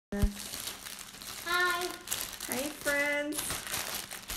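Plastic bag crinkling and rustling as a bag of wooden clothespins is handled, with a short sharp knock at the very start.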